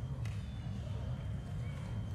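Steady background noise of a fencing hall: a low rumble with faint, indistinct distant voices, and one faint click just after the start.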